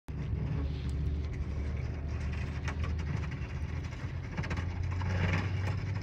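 A Polaris Ranger UTV engine running steadily in the distance as it approaches with a front snow plow. It is a low hum that grows slightly louder near the end.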